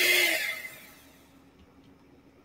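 A small electric motor whirring with a hissing noise and a steady tone, dying away within the first second; then only a faint low hum.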